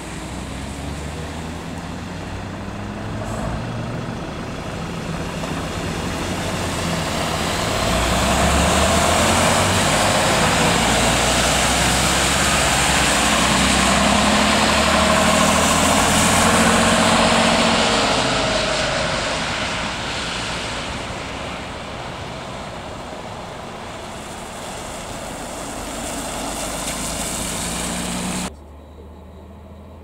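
Leyland National Mk2 bus engine running as the bus pulls away and passes, with tyre hiss on the wet road. The sound grows to its loudest about halfway through, fades, and drops off abruptly near the end.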